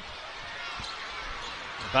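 Basketball dribbled on a hardwood court, a few bounces heard over steady arena crowd noise.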